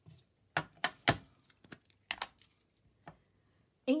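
Handling of a clear acrylic stamp block and a plastic ink pad case: a series of about seven light clicks and knocks, the sharpest about a second in, as the pad is picked up to ink the stamp.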